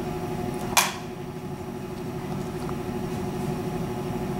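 Steady low electrical or mechanical hum with a faint constant tone, the room's background noise, with one brief hiss about a second in.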